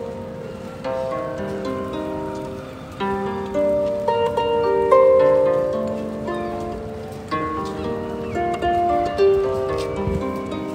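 Lever harp played by hand: an unhurried melody of plucked notes over lower notes, each note ringing on and fading after it is struck.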